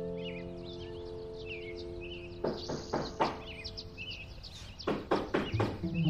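Birds chirping while a piano chord from the music fades away, then knocking on a door starts about two and a half seconds in, a few irregular knocks that come thicker near the end.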